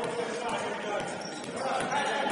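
Basketball dribbled on a hardwood gym floor, a bounce about every half second, with voices in the background.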